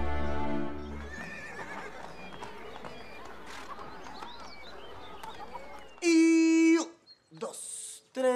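A sustained music chord ends about a second in, giving way to outdoor street ambience with a horse neighing and a murmur of people. About six seconds in, a loud held note, voice-like, lasts under a second.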